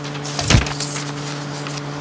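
A single knock on the wooden meeting table about half a second in, picked up close by a table microphone as papers are handled, followed by a few faint clicks. A steady electrical hum runs underneath.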